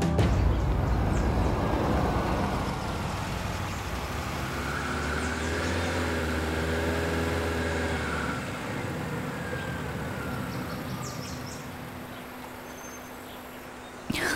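A minivan driving: steady road and engine noise, with the engine note swelling in the middle and then fading away.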